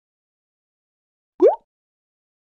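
A single short cartoon sound effect about a second and a half in: a quick upward swoop in pitch, a fraction of a second long, out of silence.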